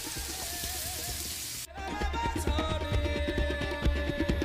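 Vegetables sautéing in hot oil in a frying pan, a steady sizzle that cuts off suddenly a little under two seconds in; music takes over for the rest.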